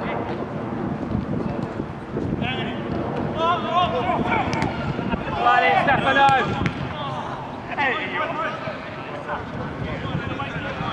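Voices shouting during a football match, in several short bursts, the loudest about five to six seconds in, over a low steady rumble.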